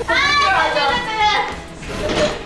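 A person's high-pitched yell with no words, about a second and a half long, rising in pitch and then falling away.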